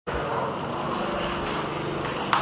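Steady background noise of a location recording, with a faint low hum and one short click about one and a half seconds in.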